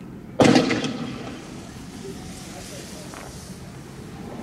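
A single loud bang about half a second in, ringing away over about a second. It comes from a shot at a police armoured vehicle where a flash is seen, most likely a tear-gas launch, since smoke follows. Afterwards a low, steady outdoor background.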